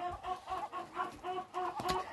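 Domestic fowl calling softly: a steady run of short, low clucking notes, about five a second.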